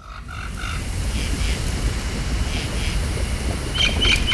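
A rushing ambience with a deep rumble that swells steadily louder, with short repeated chirps over it that grow brighter near the end. It sounds like a nature sound effect under the closing graphics.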